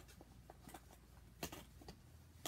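Near silence with a few faint handling clicks of small rocks being picked up from a foam cup, the sharpest about one and a half seconds in.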